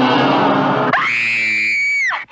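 Rock music with guitar, broken off about a second in by one long high-pitched shriek that glides up, holds and falls away.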